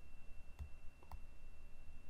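A few faint, sharp computer clicks, about half a second apart, as a division is keyed into an on-screen calculator, over a faint steady high-pitched whine.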